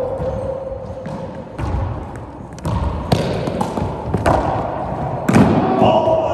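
Racquetball rally: the hollow rubber ball struck by racquets and smacking off the court walls, about half a dozen sharp hits with echo after each, the loudest near the end.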